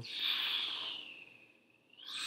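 A man making a whooshing rocket sound with his mouth: a hiss that drops slightly in pitch and fades out over about a second and a half.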